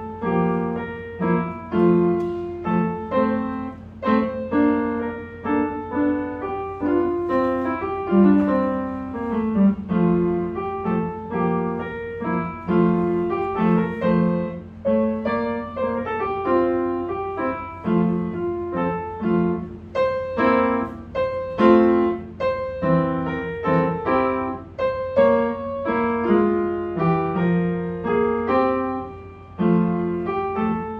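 Upright piano played solo: a piece of struck chords and melody notes at an even, moderate pace, continuing without a break. A steady low hum runs underneath.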